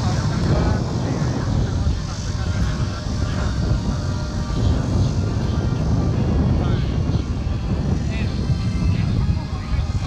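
Radio-controlled model jet flying overhead, its engine running under a loud, uneven low rumble, with voices in the background.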